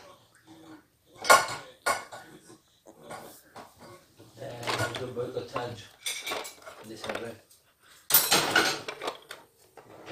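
Plates and cutlery clattering as they are loaded into a dishwasher rack: a series of separate knocks and clinks, the sharpest about a second in and another run near the end.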